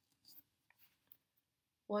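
A few faint, short clicks and light scratchy handling of a computer mouse as a tool is picked from a menu and placed, followed by a voice starting to speak at the very end.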